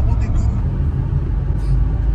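Steady low rumble of a car heard from inside the cabin, with a voice faintly over it.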